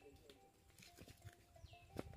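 Near silence: faint outdoor background with a few soft clicks and faint animal calls, one a short falling whistle near the end.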